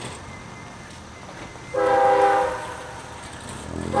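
Diesel locomotive air horn from approaching light engines: one steady blast of just under a second about two seconds in, and the next blast starting at the very end.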